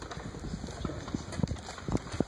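Irregular light knocks and thumps, several a second, over a low room hubbub.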